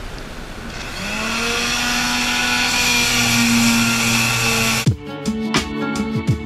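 Electric power sander spinning up about a second in and running at a steady pitch against the boat's keel, scuffing the fibreglass patch over the keel joint before barrier coat. It cuts off abruptly about 5 s in, replaced by plucked guitar music.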